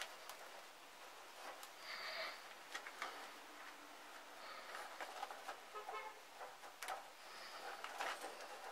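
Galvanised chicken wire being scrunched and bent by hand to crush one end of a wire-mesh tube closed: faint rustling and light metallic clicks and ticks scattered through.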